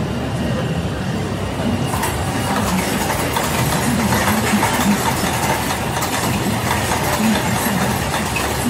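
Bottle unscrambler and capsule counting machine production line running with a steady mechanical clatter, growing brighter and a little louder about two seconds in.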